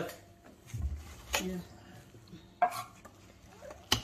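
A metal spoon stirring thick gram-flour batter with chopped vegetables in a stainless steel pot, with a few sharp clinks and scrapes of the spoon against the pot.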